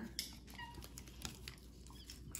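Faint rustling and light clicks of trading cards being handled and flipped through.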